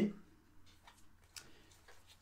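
A deck of oracle cards being leafed through in the hands: a few faint, short clicks of card edges, the sharpest about a second and a half in.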